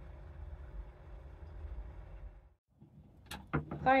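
Steady low background rumble that cuts off abruptly about two and a half seconds in. A sharp click follows near the end.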